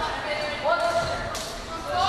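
Players' voices calling out in a reverberant school gym, with one sharp smack of a volleyball bouncing on the hardwood floor about a second and a half in.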